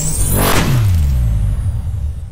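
Electronic sound effect: a high whine rising in pitch cuts off about half a second in, and a low tone then slides downward and fades out.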